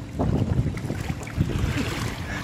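Wind buffeting the microphone, a low, uneven rumbling noise.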